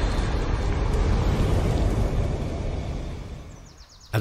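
Sound effect of an animated fire logo intro: a noisy rumble that fades away in the last second.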